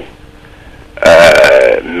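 A pause of about a second with only faint background hum, then a man's voice holding one long, steady vowel for nearly a second: a drawn-out hesitant 'euh' before he goes on speaking.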